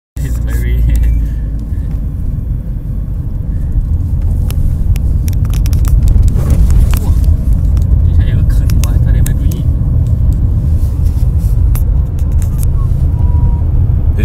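Road noise inside a moving car's cabin: a loud, steady low rumble of engine and tyres, with scattered sharp clicks and rattles.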